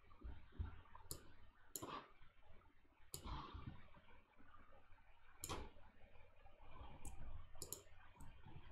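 Faint computer mouse clicks, about seven scattered through, two of them in quick succession near the end.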